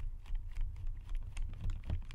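Screwdriver backing out a side-plate screw on an Avet JX 6/3 fishing reel: a quick, irregular run of small metallic clicks and ticks as the hand turns and regrips the handle, over low handling rumble.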